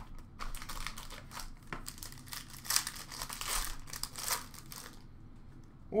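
Foil hockey card pack wrapper crinkling and tearing as a pack is opened by hand, in a run of irregular crackles that thins out near the end.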